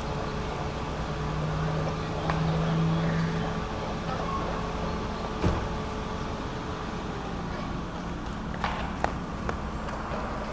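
A low motor-vehicle engine hum over a steady low rumble, swelling about a second and a half in and easing off after about three and a half seconds. A few sharp clicks come through, one near the middle and several close together near the end.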